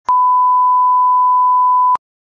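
Broadcast line-up test tone: a steady, loud 1 kHz beep held for about two seconds, of the kind that accompanies colour bars. It starts and stops with a brief click.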